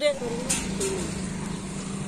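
Steady low outdoor rumble that holds at an even level, with brief faint voices of people standing nearby.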